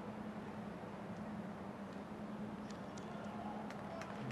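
Faint, steady ambient noise of a near-empty football stadium under the broadcast, with a low steady hum and a few faint ticks in the second half.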